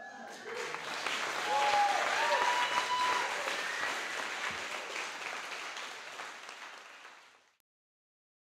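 Audience applauding and cheering, with a few rising and falling voice calls about two seconds in; the clapping builds over the first two seconds, then fades away and stops about seven and a half seconds in.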